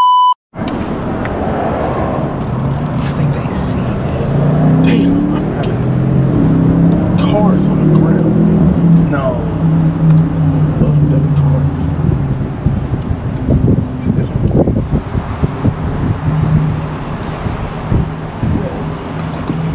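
A short, loud censor bleep, a steady beep tone lasting about half a second, then a car's engine and road noise heard from inside the cabin as it moves slowly.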